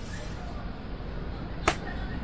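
Steady low background noise with one sharp click near the end.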